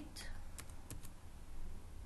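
Computer keyboard being typed on: a few separate key clicks as letters are entered.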